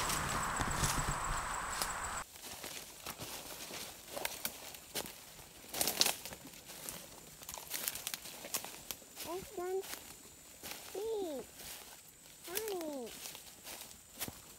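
Footsteps crunching through dry leaf litter and twigs on a forest trail, in scattered sharp clicks and cracks. Before that, a steady rushing noise cuts off suddenly about two seconds in, and near the end come three short vocal sounds that rise and fall in pitch.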